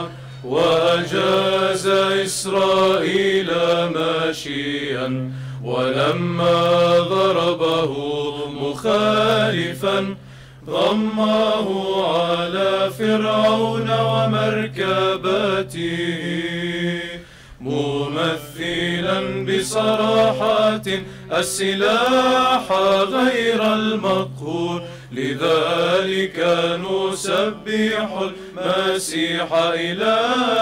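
Male Orthodox choir chanting a Byzantine hymn unaccompanied, a steady low drone held beneath the melody. The singing breaks briefly between phrases about ten and seventeen seconds in.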